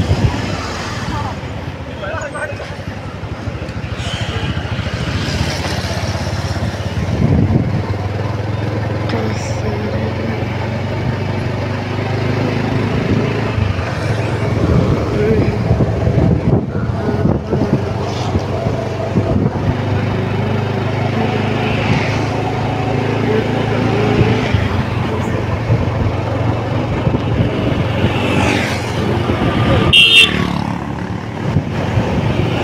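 A road vehicle's engine running steadily while driving, heard from on board, with road and wind noise.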